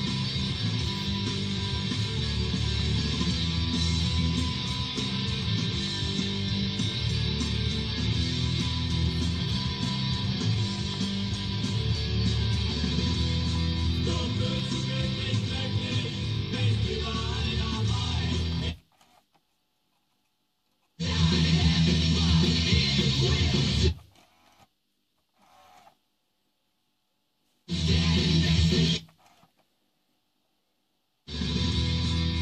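Guitar music playing through a Blaupunkt Düsseldorf C51 car radio-cassette unit. About two-thirds of the way through it cuts out, then comes back in three short bursts separated by silences as the unit's settings and source are switched.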